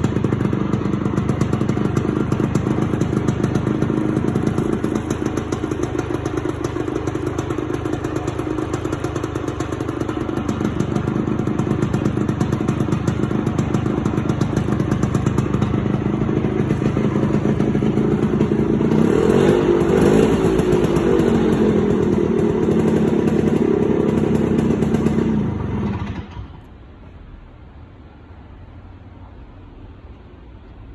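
Vespa 50 Special's two-stroke single-cylinder engine idling through a performance exhaust pipe, giving a sporty sound. Its pitch rises and falls briefly about twenty seconds in, and the engine stops suddenly near the end.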